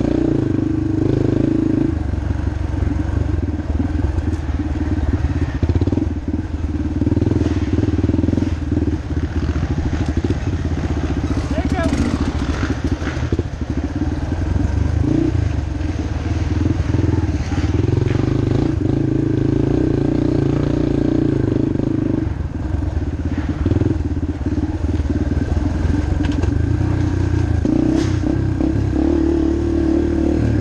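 Yamaha TT-R230 dirt bike's single-cylinder four-stroke engine running under a riding load on a wooded trail, its revs rising and falling with the throttle. A few sharp clicks and clatters come through over it.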